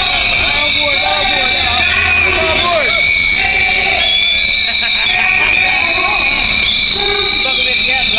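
Many whistles blown continuously by a crowd, several shrill tones overlapping and shifting, with voices underneath.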